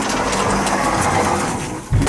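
Elevator's sliding door running closed with a steady mechanical rattle, then banging shut with a loud thud near the end.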